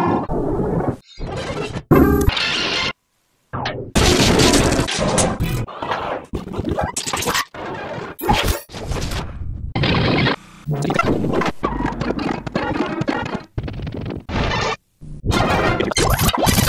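A rapid string of sped-up logo jingles and sound effects, each lasting a second or two and cut off abruptly by the next, with a short gap of silence about three seconds in.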